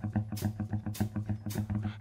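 Instrumental music in a short break between vocal lines of a song: a steady low bass note under a quick, even rhythmic pulse.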